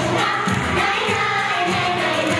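Music with singing voices, a steady full song played under the pictures.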